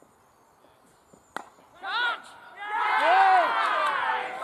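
A single sharp crack of a cricket ball being struck at the crease about a second and a half in, followed by a short shout and then a long, loud, high-pitched shout from the players.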